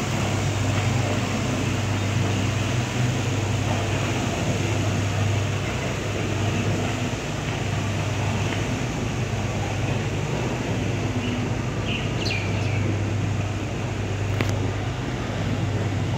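Outboard motor of an inflatable rescue boat running steadily, a constant low hum with water noise over it.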